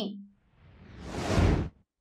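A whoosh transition sound effect marking the change to the next news item: a rushing noise that swells over about a second and then cuts off suddenly.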